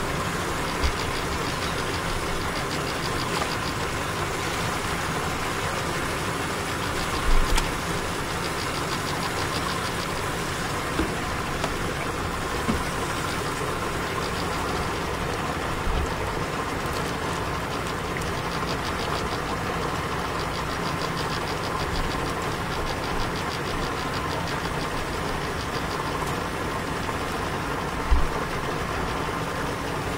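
A motor running steadily with an even hum, and a few dull low knocks, the loudest about seven seconds in and again near the end.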